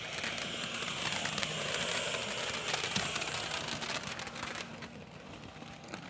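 Ground fountain firework spraying sparks: a steady hiss laced with fine crackling that fades out over the last couple of seconds as it burns down.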